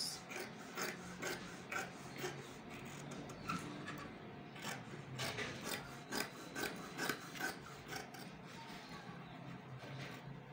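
Scissors cutting through printed fabric along a chalk-marked dart line: a run of short, crisp snips, two or three a second.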